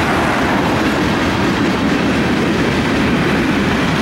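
Freight cars of a Union Pacific manifest train rolling past at a steady speed, with a loud, even clatter of steel wheels on the rails.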